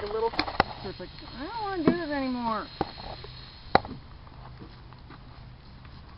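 A horse whinnying about a second and a half in: one call of a little over a second, its pitch quavering fast and falling as it goes. A few sharp clicks come before and after it.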